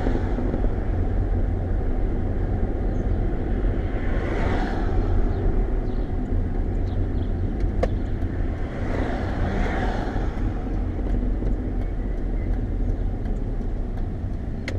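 Car engine and tyre noise heard inside the cabin of a slowly moving car, steady throughout, with two swells of noise from vehicles passing about four and ten seconds in, and a single click shortly before the second.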